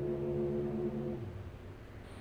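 A person humming one steady low note for about a second, which then fades out.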